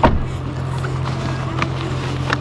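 A single sharp click as the infant car seat is fastened, followed by a few faint ticks and fabric handling over a steady low hum inside the car.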